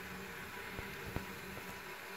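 Steady hiss of a three-ring gas stove burner running with its main ring lit under a pot, with two faint clicks about a second in.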